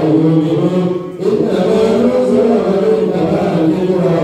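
A man's voice chanting an Islamic prayer into a microphone, in long held melodic lines with a short pause for breath about a second in.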